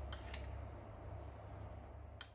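A metal spoon clicking twice against a glass jar as salt is scooped out, over a steady low hum.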